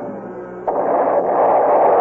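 Radio-drama sound effect of an artillery bombardment opening: a sudden crash about two-thirds of a second in, swelling into a loud, rushing roar, with dramatic orchestral music underneath.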